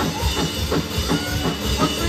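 Live rock band playing: a drum kit keeping a steady beat under electric guitars, with short sliding high notes.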